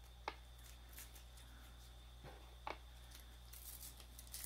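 Faint handling of an opened candy packet's paper wrapper, with three small sharp clicks, one early and two close together about two and a half seconds in, over a low steady hum.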